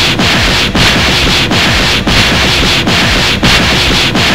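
Anime battle sound effects for a close-quarters fight: a loud, dense rushing noise full of low booms that drop in pitch. The rush is broken by brief dips roughly every three-quarters of a second, like a run of clashing blows.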